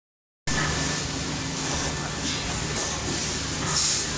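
LITAI TTF-700AF plastic thermoforming machine running, starting after half a second of silence: a steady mechanical hum with several short bursts of air hiss.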